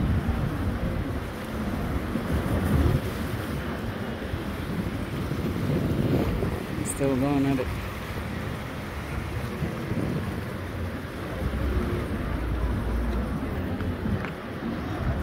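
Wind buffeting the phone's microphone over sea waves washing against breakwater rocks.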